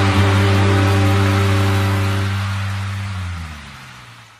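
A live rock band's final held chord ringing out under a noisy wash, fading away over the second half.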